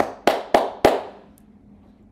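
Four sharp hand strikes in quick succession, about three a second, each ringing out briefly.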